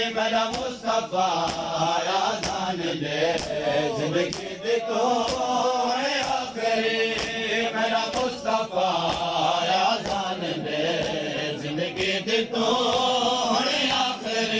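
Male voices chanting a noha, a Shia lament for Muharram, over rhythmic matam: men slapping their bare chests with open hands, about two slaps a second.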